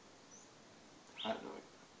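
Mostly quiet room tone, with one brief, faint high chirp from a bird outside about a third of a second in, and a man's single spoken word just past a second in.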